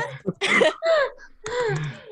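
A person coughing about half a second in, followed by short voice sounds.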